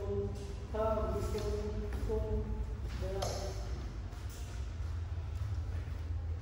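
A person's voice in long, held tones, in three stretches during the first half, over a steady low hum.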